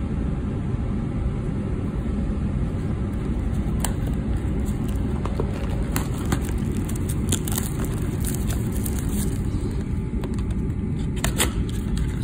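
Plastic shrink-wrap and cardboard of a trading-card blaster box being torn open and handled: scattered crackles and clicks, busiest in the second half, over a steady low rumble.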